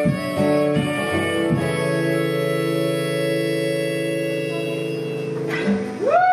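Solo acoustic guitar ending a song: a few last strums, then a final chord left ringing for about four seconds before it stops.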